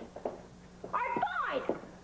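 A cat meowing: one drawn-out meow that starts about a second in, rises briefly, then falls in pitch.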